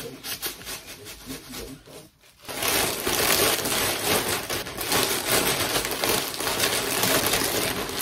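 Plastic vacuum storage bag crinkling and bedding rustling as linens are handled and stuffed into it: light, scattered handling noise at first, then a dense run of crinkles and rustles from about two and a half seconds in.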